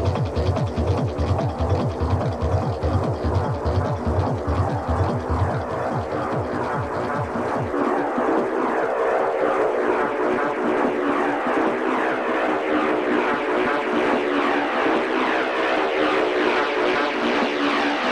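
Industrial techno with a pounding kick drum. About seven seconds in, the kick and bass drop out, leaving a dense, droning, rhythmic mid-range layer as the track breaks down.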